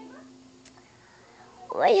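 The last ukulele chord rings on and fades out. Near the end a girl's voice cries out, high and sliding in pitch.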